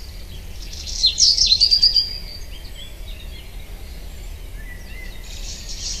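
Birds chirping over a steady low background hum: a quick run of high chirps and one held whistle about a second in, then fainter calls.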